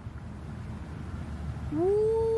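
Low water sounds from a hand moving in shallow water. About 1.7 seconds in, a woman's long crooning 'ooo' call rises and then holds steady, the start of a coaxing 우쭈쭈 sound.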